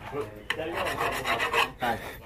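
A hand file rasping against the metal body of an RPG rocket in repeated back-and-forth strokes.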